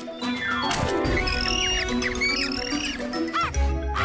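Cartoon background music with comic sound effects: a quick falling glide, then a run of high squeaky chirps, and a low thump near the end.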